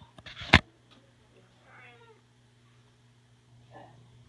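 Domestic cat meowing, with a short call about two seconds in and another near the end. A sharp, loud knock close to the microphone comes about half a second in.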